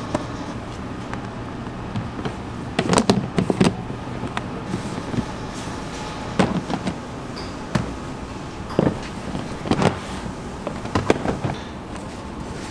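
Knocks and clatters of plastic dough proofing boxes being handled and set down, in scattered groups of sharp knocks over a steady background hum.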